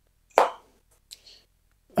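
Motorola Razr+ (2023) flip phone folded shut: a single sharp snap as the hinge closes about a third of a second in, followed by a couple of faint clicks about a second in.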